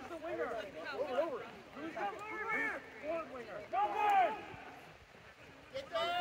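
Several voices shouting calls on a rugby pitch, too far off to make out as words. The shouting falls to a lull about a second before the end.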